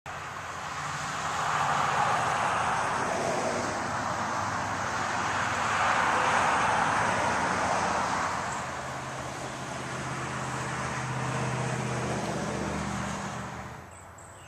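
Road traffic: vehicles pass by in two swells of tyre and road noise about 2 and 6 seconds in, then a lower steady engine hum in the last few seconds. The sound cuts off abruptly just before the end.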